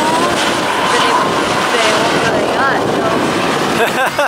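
Helicopter flying overhead, its steady engine and rotor noise mixed with the voices of a nearby crowd.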